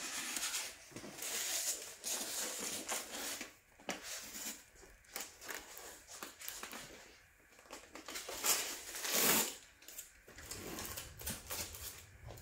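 Plastic wrap crinkling and rustling as a foam packing block wrapped in plastic is handled, in irregular bursts, with a louder swish about nine seconds in.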